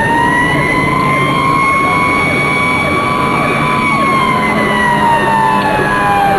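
Federal Signal PowerCall electronic siren on a fire squad truck sounding a slow wail: the pitch holds high, then falls away about four seconds in.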